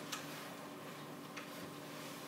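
Two faint ticks of a stylus against a drawing tablet, one just after the start and one about a second and a half in, over a faint steady hum.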